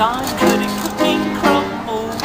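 Upright piano played in a lively, rhythmic run of chords, with a woman's voice over it.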